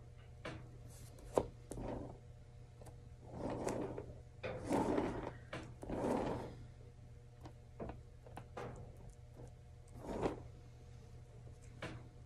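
A painting spinner turned by a gloved hand, giving several rubbing, scraping drags with a few light knocks. The spinner runs stiffly, which the artist puts down to the shower cap underneath restricting it.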